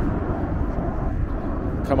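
Steady low rumble of outdoor street noise, with no distinct events in it.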